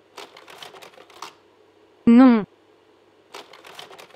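A voice saying the single word 'non' (French for no), just after two seconds in, set between two short runs of quick, light clicks.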